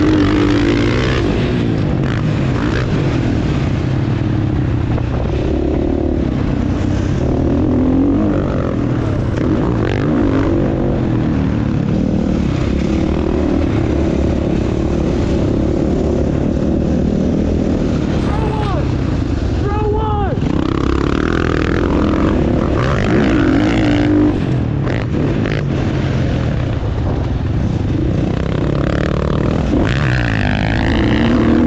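Dirt bike engine under riding load, its pitch rising and falling again and again with the throttle and gear changes.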